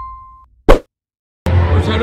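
Logo-intro sound effects: a steady electronic tone fading out, then one short, loud hit about two-thirds of a second in, followed by a moment of dead silence. Near the end a man starts talking over crowd chatter.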